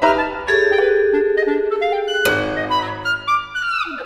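Contemporary classical chamber music for sextet: a long held note with a fast wavering flutter, then a sharp, full attack about two seconds in over a low sustained note, and pitches gliding downward near the end.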